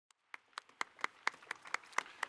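Hand clapping: evenly spaced single claps, about four a second, starting about a third of a second in.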